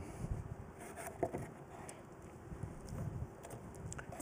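Quiet room with a few faint clicks and knocks of objects being handled, and rustling in a cardboard box near the end as a coil is fished out of it.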